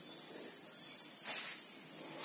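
Crickets chirping in a steady, high-pitched chorus, with a faint knock about a second and a half in.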